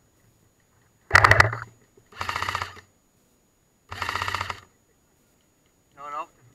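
Airsoft electric support gun (LMG) firing three short full-auto bursts, each a rapid, even rattle under a second long. The first burst is the loudest.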